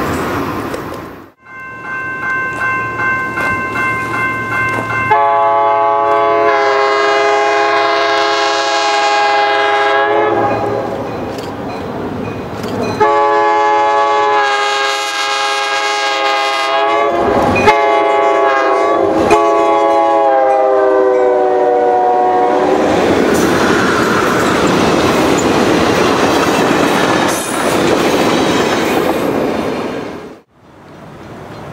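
A grade-crossing bell ringing in quick pulses, then the air horn of Pennsylvania Railroad EMD E8A diesel locomotives blowing the crossing signal: two long blasts, a short one and a final long one. After the horn the train is heard running closer, a steady rumble of engines and wheels.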